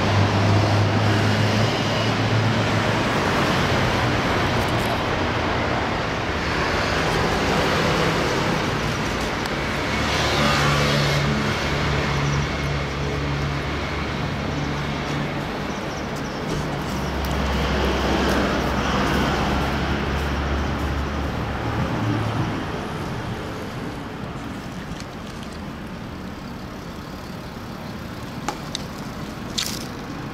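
Road traffic noise, with low engine rumbles from passing vehicles swelling and fading several times, and a few sharp clicks near the end.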